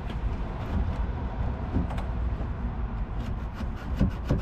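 A Ram 1500 Classic headlight assembly being wiggled loose from its mounting: a few faint plastic clicks and knocks over a steady low rumble.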